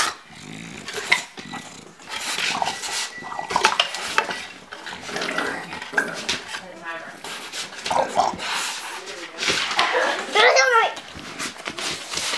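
English bulldog puppy and its mother play-fighting: scuffling with growls and short barks, and a brief high cry near the end.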